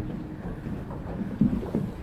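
Wind noise on the microphone, with footsteps and knocks on the wooden planks of a covered footbridge. The loudest knock comes about one and a half seconds in.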